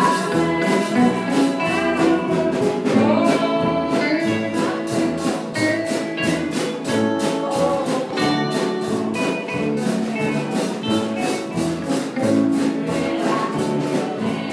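A woman singing a gospel song into a microphone over music with a steady beat and guitar accompaniment.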